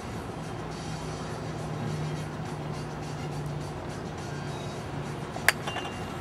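A golf club striking a ball off a hitting mat: one sharp crack about five and a half seconds in, over a steady low hum.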